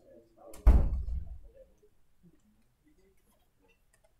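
A classroom door shutting with a single heavy thud about two-thirds of a second in, dying away within a second.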